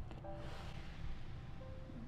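A stainless pot of water near the boil fizzing and hissing as baking soda is poured in, the hiss strongest about half a second in, with a few faint steady tones beneath it.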